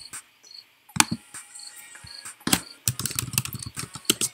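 Computer keyboard being typed in a quick run of clicks in the second half, after a single mouse click about a second in. A faint short high chirp repeats about twice a second underneath.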